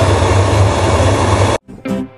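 Electric kettle heating water, a loud steady rumble and hiss that stops suddenly about one and a half seconds in, when acoustic guitar music begins.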